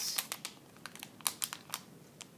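Foil-plastic blind-bag packet crinkling in the hands as it is worked open, an irregular string of sharp crackles.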